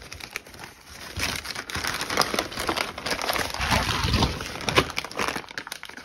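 Plastic mailer bag crinkling and rustling with small crackles as it is handled and opened by hand, picking up about a second in.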